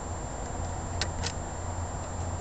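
Two light metallic clicks about a second in, from a feeler lock pick working the pins of a lock cylinder, over a steady low background rumble.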